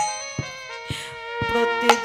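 Kirtan accompaniment between sung lines: steady held chords of a harmonium, with sharp percussion strikes about every half second and the singer's voice returning at the very end.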